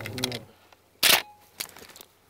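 Shotgun being handled in the blind: a brief, sharp sliding scrape about a second in, followed by a few light clicks.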